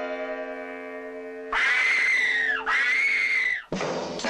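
A held orchestral chord fades away, then a person lets out two long, high screams in quick succession, each rising and then falling in pitch. Guitar-led rock music starts right at the end. This is a horror-film trailer soundtrack.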